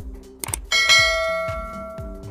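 A click and then a single bell-ding sound effect from a subscribe-button animation, striking about two-thirds of a second in and ringing down over about a second and a half, over background music with a steady beat.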